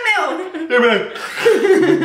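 Several young adults chuckling and laughing amid excited talk.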